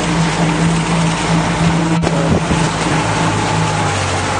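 Motorboat engine running steadily, with wind and water noise.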